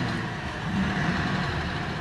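Steady background noise, an even hiss and rumble, in a gap between spoken sentences.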